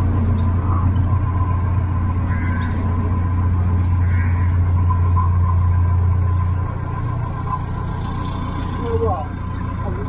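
Narrowboat's inboard engine running with a steady low drone as the boat moves along. About two-thirds of the way through the drone drops and goes quieter.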